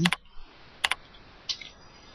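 A few separate keystrokes on a computer keyboard, a sharp click about a second in and another at one and a half seconds, as a line of code is finished and Enter is pressed.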